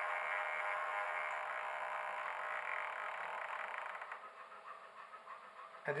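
Servo of a model glider's variable centre-of-gravity unit driving ballast along a lead screw: a steady whir with a faint whine, dying away about four seconds in.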